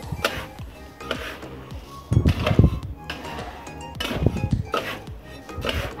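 Metal spatula scraping and turning dry glutinous rice in a steel wok as it toasts, the grains rattling against the pan in irregular strokes.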